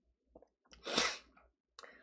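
A short, sharp burst of breath from a person, about a second in, lasting about half a second.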